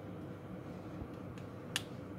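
A single sharp plastic click about three-quarters of the way through, as the RJ45 keystone module is pressed shut over the network cable's wires, over a faint steady hum.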